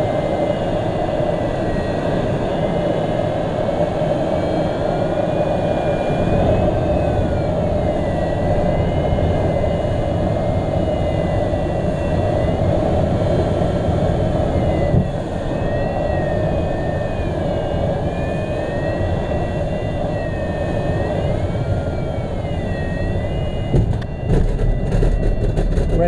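Steady rush of airflow past a glider's canopy, heard from inside the cockpit, with a thin electronic variometer tone sliding slowly up and down in pitch. Near the end, an uneven low rumble as the glider touches down and rolls on grass.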